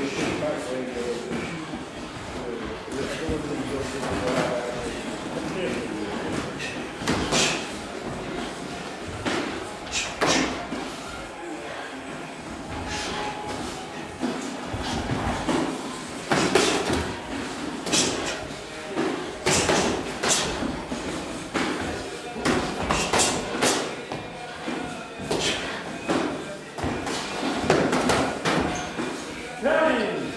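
Boxing gloves landing during a sparring bout: irregular sharp smacks and thuds, with indistinct voices in the background.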